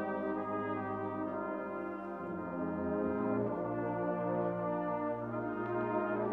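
Brass band of cornets, horns, euphoniums, trombones and tubas playing slow, held chords that change a few times.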